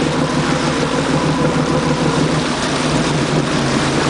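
A boat's engine running steadily at low speed, with the rush and churn of its wake behind the stern.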